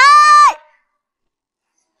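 A high-pitched cartoon voice shouting the final word of an angry line, ending about half a second in and followed by complete silence.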